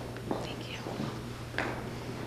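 Faint whispering and low murmured voices in a quiet hall, over a steady low hum.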